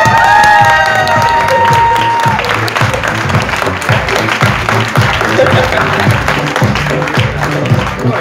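People clapping and cheering, with loud whoops and a held shout in the first two seconds, over background music with a steady beat.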